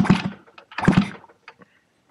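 Yamaha RD50DX 50cc two-stroke moped engine being turned over with its spark plug out, in two strokes about a second apart, to test the new electronic ignition for spark, with a few faint clicks after.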